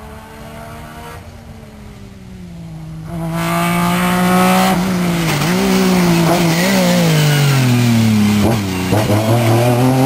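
MG Metro rally car's engine, faint at first, then much louder from about three seconds in, its revs rising and dropping again and again as the car is driven hard around cones. A few sharp cracks sound near the end as the revs drop.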